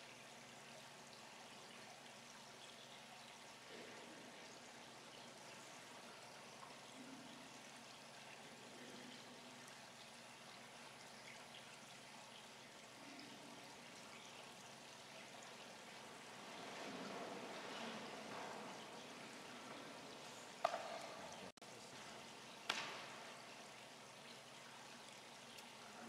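Near silence: faint room tone of a large church with a steady hiss. There is a slight rise in faint rustle about two-thirds of the way through, then two brief soft knocks a couple of seconds apart near the end.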